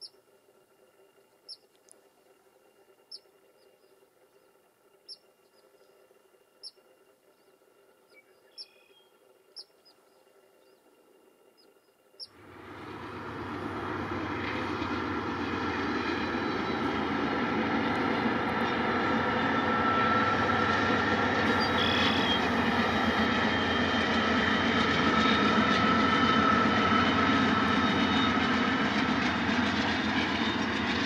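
Train passing close by: a loud, steady rumble and rattle of wheels on rail that starts suddenly about twelve seconds in and builds over the next few seconds, with faint high squeal tones over it. Before that it is quiet except for faint short high chirps about every second and a half.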